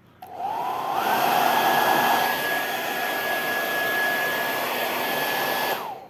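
Gaabor GHD N700A hair dryer switched on at its fan setting: the motor whine rises in pitch as it spins up in the first second, runs steadily with a rush of air, then cuts off and winds down just before the end.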